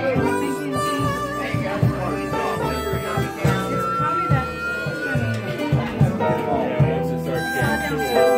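Live acoustic band playing: an upright bass plucks changing low notes under long, held melody notes from fiddle and wind instruments.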